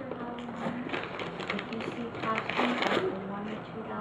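Quiet background talk of adults with the light crackle of tissue paper being handled in a gift box.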